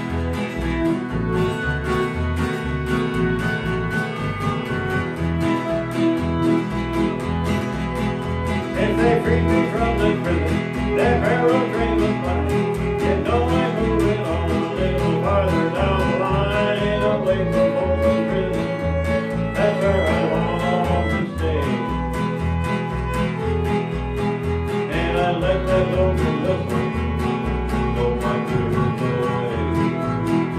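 A small country band playing live, mostly instrumental: a bowed fiddle carries a wavering melody over a strummed acoustic guitar and a steady electric bass line.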